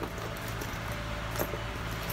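Soft handling noise of a logo-print canvas backpack being turned over in the hands, with a faint click about one and a half seconds in, over a steady low hum.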